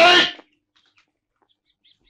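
A man's long shouted call, with its end trailing off about half a second in. Then quiet, with a few faint bird chirps near the end.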